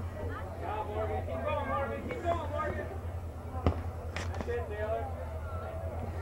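Players and spectators calling out on the field, heard as distant shouting voices over a steady low hum, with one sharp thud a little past the middle.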